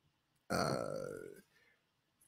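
A man's drawn-out "uh", a hesitation sound that starts about half a second in and falls in pitch as it fades, lasting about a second.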